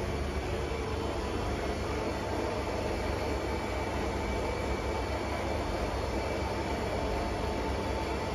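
Refrigeration condensing unit of a stainless bulk milk cooling tank running: a steady mechanical hum with a faint constant high tone, unchanging throughout.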